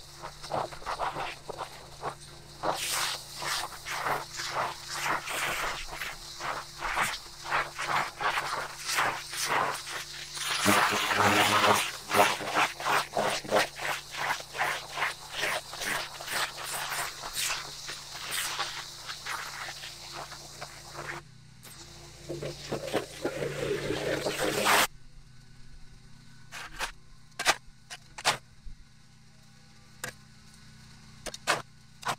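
Steel shovel scraping packed dirt off a buried concrete sidewalk in repeated strokes, about two a second. About 25 s in, the scraping gives way abruptly to a quieter stretch with a few sharp clicks.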